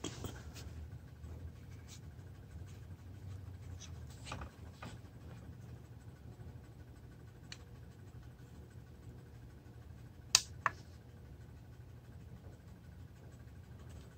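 Quiet handling noise: faint rubbing and scraping of fingers on a plastic bicycle tail light held close to the microphone, over a low steady hum. Two sharp clicks come close together about ten seconds in.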